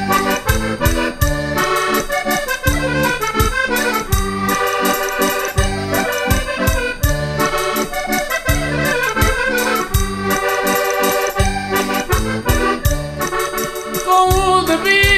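Instrumental break in a Portuguese popular song: a concertina (diatonic button accordion) plays the melody over a steady beat.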